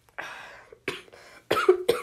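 A boy coughing a few times, then clearing his throat loudly near the end.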